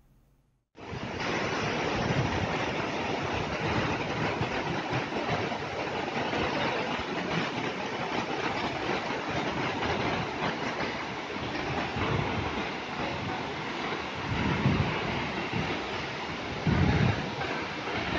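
Waterfall, its white water pouring over broad rock slabs and rushing steadily, starting about a second in. A few low rumbles come through near the end.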